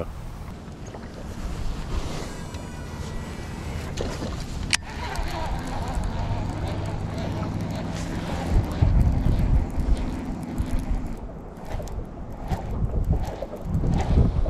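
Wind rumbling on the microphone over low boat and water noise, with one sharp click about five seconds in.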